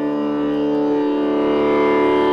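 Steady sustained drone of a Carnatic music accompaniment: several held tones that swell slowly, with no melody over them yet.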